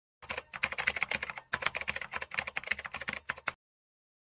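Typing sound effect: rapid keyboard clicks in two runs, broken by a short pause about a second and a half in.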